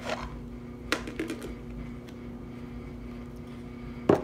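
A clear plastic slime tub being handled on a table, giving a sharp knock about a second in and a few small ticks after it. A steady low hum runs underneath.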